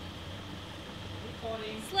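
Steady background noise with a faint low hum, and a voice speaking briefly near the end.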